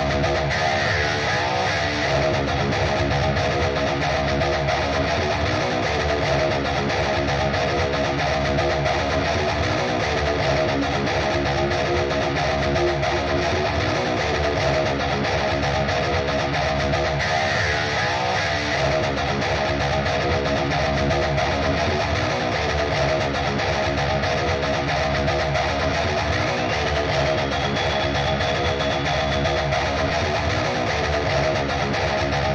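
Electric rhythm guitar tracks play a looped riff in a mix session while an equalizer cuts their muddy low mids. Near the end a narrow, ringing high tone glides upward and holds: a narrow EQ boost being swept to hunt down a whistling frequency.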